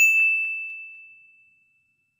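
A single notification-bell 'ding' sound effect, struck once and ringing with a clear high tone that fades away over about a second and a half.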